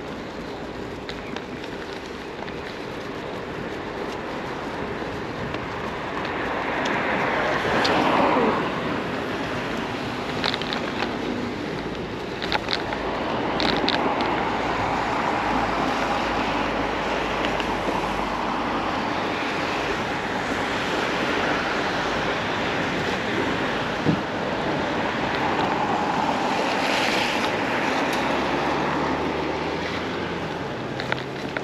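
Wind noise on the microphone and bicycle tyres rolling over paving while riding. A louder swell with a falling pitch comes about eight seconds in, followed by a few sharp clicks.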